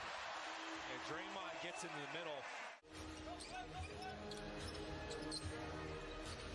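Faint NBA broadcast audio: a basketball bouncing on the hardwood over steady arena noise and a commentator's voice, with a brief dropout just before halfway.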